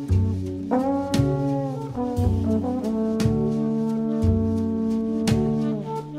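Slow jazz waltz by a small quartet: trombone and alto saxophone holding long, sometimes bending notes over plucked double bass notes about once a second and light drum and cymbal strikes.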